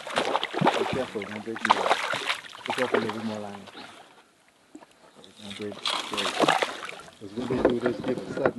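Men's voices talking indistinctly, with a brief near-silent pause about halfway through.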